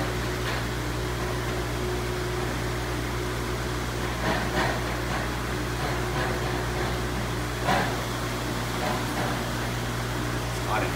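Steady low mechanical hum with a few short knocks, about four and a half seconds in and again near eight seconds.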